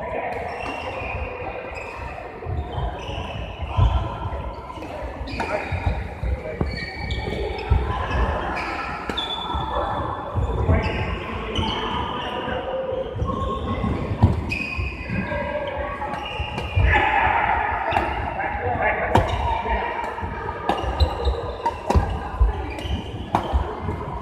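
Badminton rackets striking shuttlecocks in sharp ticks, with players' footsteps thudding on the court, over a background babble of voices in a large indoor sports hall.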